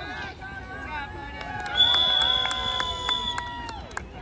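Sideline spectators cheering and clapping at a children's soccer game, starting about two seconds in, with a long high-pitched note held above the cheers. It fades out just before the end.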